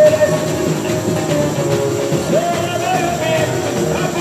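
Live samba played by a samba school bateria, with tamborins, surdos and other drums keeping a dense, driving rhythm, under a sung melody line with long held notes.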